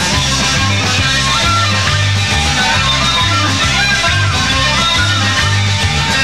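A Celtic punk band playing live through an instrumental passage between sung verses, with guitars and a bass line that moves from note to note.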